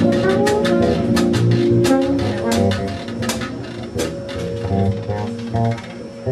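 Live jazz fusion band playing: electric bass lines under drum-kit and cymbal hits. The drums stop about four seconds in, leaving the bass playing on more quietly.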